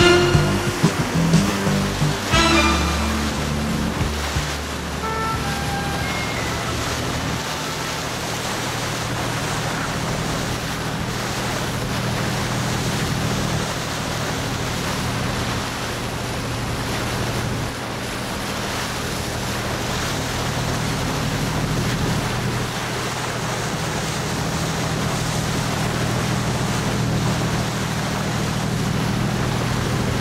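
A boat's engine running with a steady low hum, along with wind and sea-water noise. Music plays over the first few seconds and fades out.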